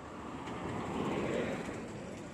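A road vehicle passing by: its engine and tyre noise swells to a peak a little past halfway, then fades.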